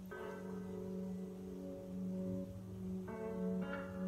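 Soft background music of sustained, ringing bell-like tones, with new notes coming in just after the start and again about three seconds in.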